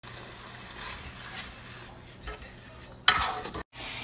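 Diced chicken sizzling steadily in butter in a cast iron skillet, with a short loud clatter about three seconds in.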